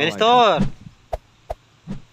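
A brief spoken word, then two sharp knocks about a third of a second apart, with a fainter short sound near the end.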